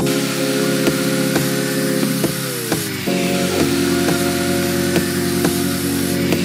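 Angle grinder cutting through a metal bicycle frame tube, a steady hiss, over background music with a regular beat.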